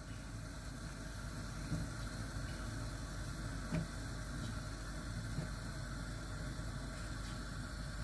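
Steady low rushing noise of a gas stove heating a pot of water, with a few faint soft plops as balls of glutinous rice dough are dropped into the water.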